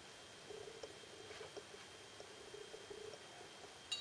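Faint rubbing and a few small clicks of a metal fork being moved through a glass of water from the centre to one side, for about three seconds.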